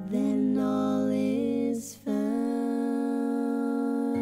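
A woman singing long held notes in a gentle lullaby style, with one step up in pitch and a quick breath about two seconds in.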